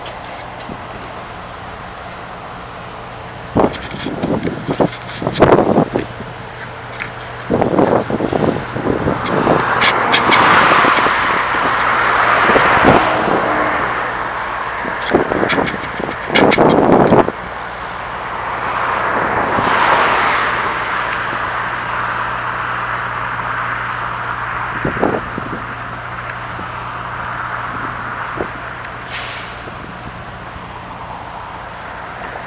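Road traffic: vehicles pass by, swelling and fading about ten seconds in and again about twenty seconds in, over a steady low hum. Clusters of sharp knocks and crackles come in between, the loudest around four to six seconds in and again around sixteen to seventeen seconds in.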